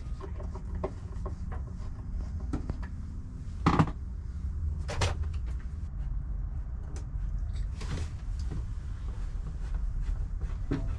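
A heavy wooden overhead kitchen cabinet being handled and worked into position, with scattered knocks and bumps, the loudest a pair of knocks about four seconds in and another about a second later.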